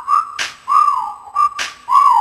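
A whistled melody in a hip-hop track: short phrases swoop down and settle on one held note, over a sparse beat with a sharp drum hit twice.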